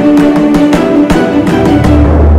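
Instrumental intro music with plucked-string notes struck in a quick, even rhythm over a held tone.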